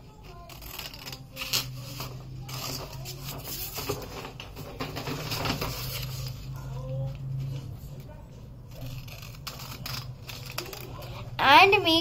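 Scissors cutting through a sheet of paper: irregular snips and paper rustling, over a steady low hum.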